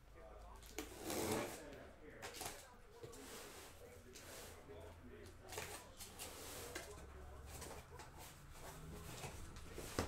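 Faint handling noise of a cardboard shipping case being opened: rustling, scraping and light knocks of the cardboard and its flaps, with a louder burst of noise about a second in.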